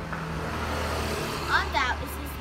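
A motor vehicle passing: a steady low engine hum under a haze of road noise that swells and fades over about a second and a half.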